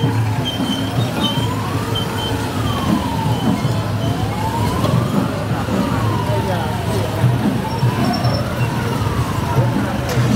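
Vehicle siren wailing, its pitch slowly rising and falling about once every three seconds, over the low running of vehicle engines.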